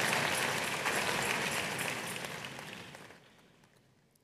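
Audience applause from a congregation, a dense patter of clapping that fades away over about three seconds, then the sound drops out to silence near the end.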